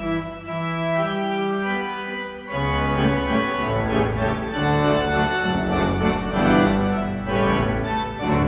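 Marcussen concert pipe organ playing sustained chords. About two and a half seconds in, it opens out into louder, fuller chords over a deep pedal bass.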